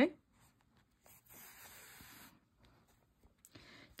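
Faint rubbing swish of wool yarn being drawn by hand through knitted fabric, lasting about a second, followed by a few faint light ticks near the end.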